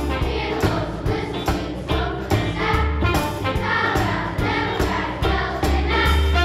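Children's choir singing a jazz song in unison over instrumental accompaniment with a steady beat and a bass line.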